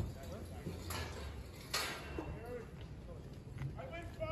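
Scattered voices of people on a city street over a low steady rumble, with two short sharp noises, the louder one a little under two seconds in.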